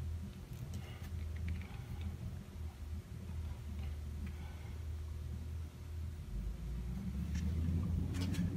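Low steady hum with a few faint rustles and ticks as the flexible metal gooseneck arm of a magnifying lamp is bent out by hand.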